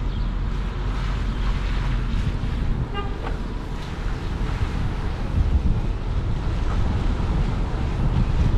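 Steady low rumble of a car driving slowly, with wind noise on the microphone.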